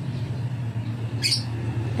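A steady low mechanical hum, with a single short, high bird chirp a little over a second in.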